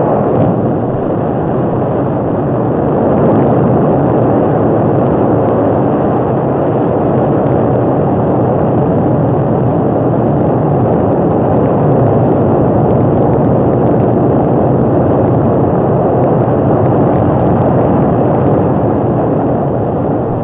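Saturn V first stage's five F-1 rocket engines at liftoff: a loud, steady rumble of rocket exhaust that holds without a break and eases slightly near the end.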